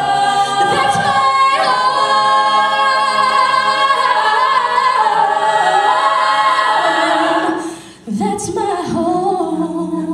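A cappella vocal group singing held chords in close harmony with a female soloist's line over the top. The voices fade out about eight seconds in, and after a brief gap a new sung phrase begins.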